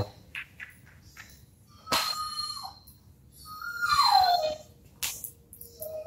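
A dog giving two high, falling whines, a short one about two seconds in and a longer one about four seconds in, followed by a sharp click.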